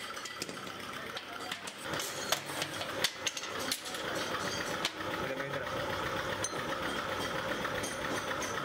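Workshop machinery running steadily, with scattered sharp metallic clicks and clinks from small steel brake-shoe parts being handled.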